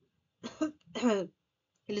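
A person clearing the throat in two short voiced bursts about half a second apart.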